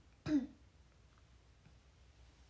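A young woman clearing her throat once, a short sound with a falling pitch.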